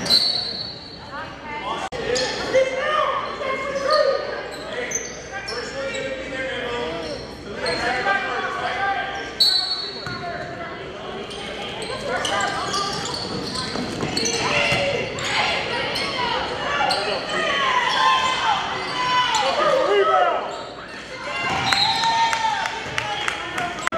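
Basketball game in a large echoing gym: a ball bouncing on the hardwood court while players and spectators call out. There are two brief high squeals, one at the start and one about nine and a half seconds in.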